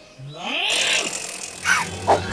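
A cartoon character's wordless vocal sounds: a gliding voice with a hiss about half a second in, then a short falling voice near the end.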